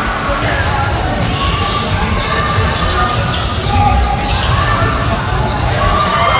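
A basketball bouncing on a hardwood gym floor during play, under a steady murmur of crowd voices echoing in a large hall.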